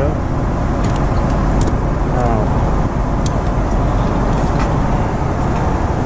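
Steady cabin noise of a Boeing 777-200ER in cruise, an even rush of air and engines, with a few light clicks from handling the armrest compartment and the entertainment remote.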